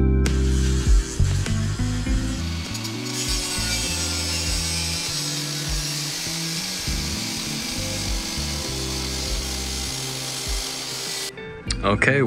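A small handheld grinder with a cutting disc cutting through the steel lip of a car's rear wheel arch, a steady high-pitched grinding that grows stronger about three seconds in and stops shortly before the end. Background music plays under it.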